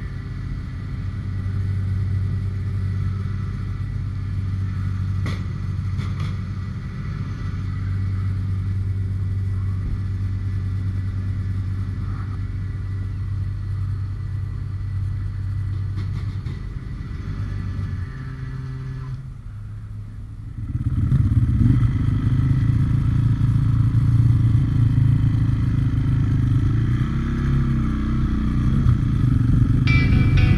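Enduro motorcycle engine idling steadily, then after a short drop about two-thirds of the way through, the bike running along under way, louder and rougher, with small changes in engine speed.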